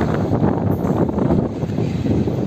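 Wind buffeting the microphone over the low rumble of a freight train's last car rolling away down the track.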